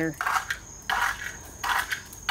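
The chrome handlebar switch on a 1959 Mitsubishi Silver Pigeon C76 scooter being worked by hand: three short metallic clicking rattles, a little under a second apart.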